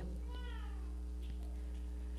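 Steady low electrical hum in a pause of the talk. About half a second in there is one faint, short, falling high-pitched cry, like a meow.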